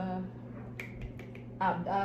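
A single sharp click about a second in, from handling a makeup compact and brush, between a woman's words.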